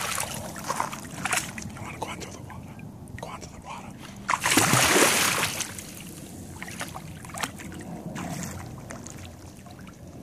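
A dog splashing through shallow water. There is one loud, longer splash about four and a half seconds in as it plunges its head under the surface, with smaller splashes before and after.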